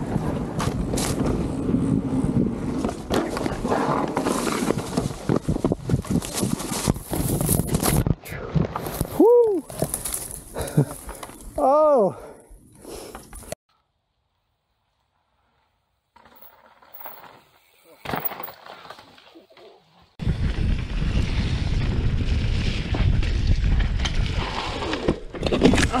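A mountain bike riding down a dirt trail: steady rushing noise from wind on the helmet-camera microphone and the tyres on the trail, with two short rising-and-falling vocal cries about halfway through. After a short silence the sound turns faint for a few seconds, then the rushing noise returns.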